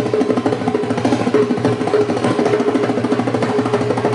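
Hand drum played fast in a solo: dense, rapid hand strokes on a small single-headed drum, with a steady tone sounding underneath.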